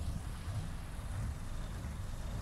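Low, uneven rumble of wind buffeting a phone's microphone outdoors, with a faint steady background hiss.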